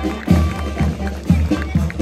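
Marching brass band playing a march: a bass drum beats about twice a second under held brass and saxophone notes.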